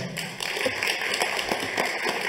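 Audience applauding: many hands clapping at once in a dense, even patter.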